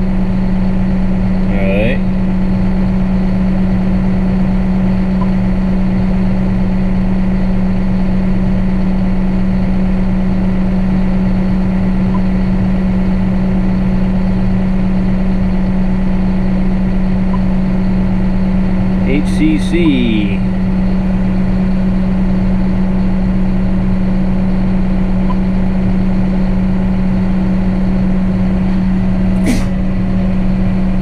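John Deere 6170R tractor idling, heard from inside the cab as a steady drone with a strong, unchanging low hum. A few sharp clicks come near the end.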